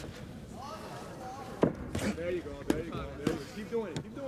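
Four sharp smacks from two fighters grappling on a ring canvas, the first about one and a half seconds in and the loudest, with shouting voices around them.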